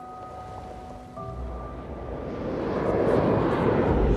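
A deep rush and rumble of jet aircraft passing low overhead, swelling steadily louder from about a second in, under held music notes.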